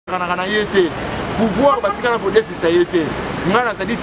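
A person speaking continuously over a steady background of street noise.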